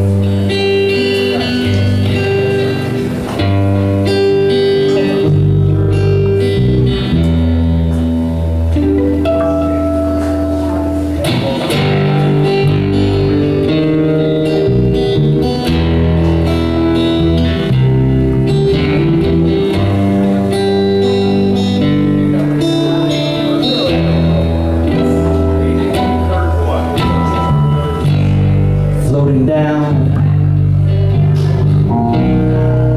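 Live band playing an instrumental passage of a slow song: an acoustic guitar with a second guitar and a bass line, held notes and chords changing every second or two.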